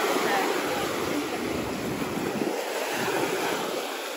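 Sea waves washing onto a sandy beach, a steady surf sound.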